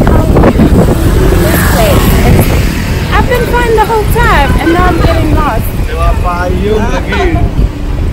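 Wind buffeting the microphone over street traffic, with a voice talking indistinctly.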